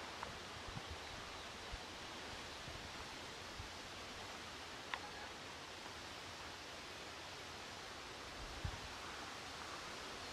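Quiet outdoor ambience in a grassy field: a faint steady hiss with light rustling, a few soft low bumps, and a single small click about five seconds in.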